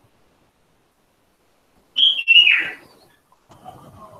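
A short, loud, high-pitched chirp-like whistle about two seconds in, in two parts, the second sliding down in pitch, followed by faint low rustling.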